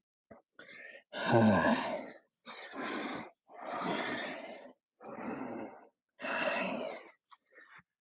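A person breathing out hard, about five long breathy exhales a second or so apart, the first with a low groan, while stretching out after a run of kicks.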